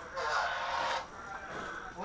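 A faint, indistinct voice in the first second, then quiet outdoor background.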